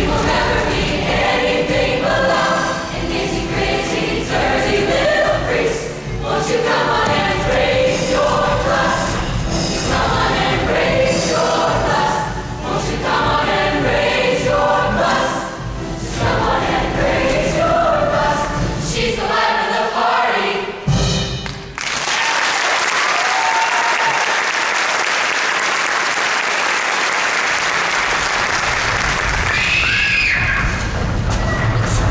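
Large show choir singing with backing music. The song ends about two-thirds of the way through, and steady audience applause follows.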